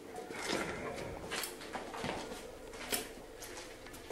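Low, muffled voices and scattered knocks and rustles of people moving and handling things, picked up by a handheld camera, with one sharper knock about three seconds in.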